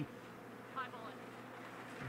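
Faint steady background noise with a low hum, and one brief, faint voice-like sound a little under a second in.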